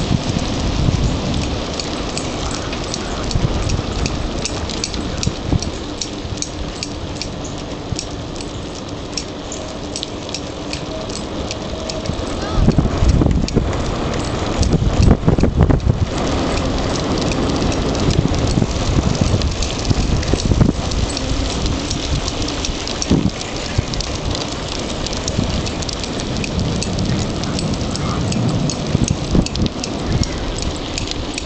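Wind rushing over the microphone and bicycle tyres rolling on rough asphalt, with frequent small clicks and rattles from the moving bike. The noise grows louder for a few seconds near the middle.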